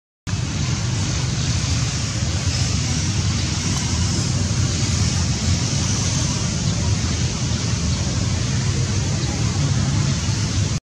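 Steady background roar of road traffic, a continuous low rumble with a hiss over it, starting just after a brief gap.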